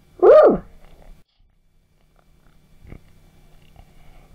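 One short vocal cry from the cartoon pig, rising briefly and then sliding steeply down in pitch near the start. After it come only a faint low hum and a small knock.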